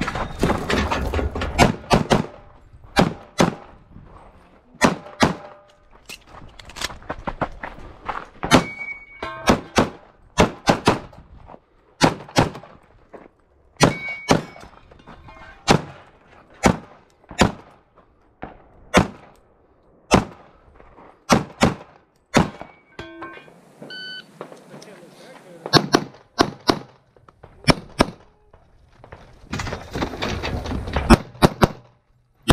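Handgun shots fired through a pistol-match stage run, mostly in quick pairs with short gaps between strings, heard close from the shooter's position.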